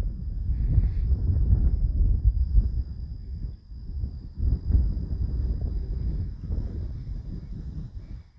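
Wind buffeting a phone's microphone in uneven gusts, a low rumble that rises and falls, with a faint steady high-pitched tone running beneath it.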